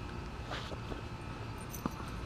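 Faint outdoor background: a steady low rumble with a few light ticks scattered through it, the sharpest near the end.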